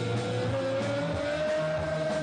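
Rock band playing: one long held note slides slowly upward over bass and drums, with the bass line stepping up about a second in.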